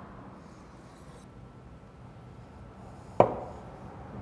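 A chef's knife slicing through a grilled hot link on a wooden cutting board, with one sharp knock of the blade on the board about three seconds in.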